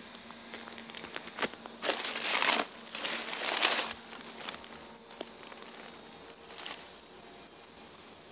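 Papery crinkling and rustling as a bald-faced hornet nest's paper envelope and the shrub leaves around it are handled. Two louder rustling bursts come about two and three seconds in, with lighter rustles and a few small clicks after.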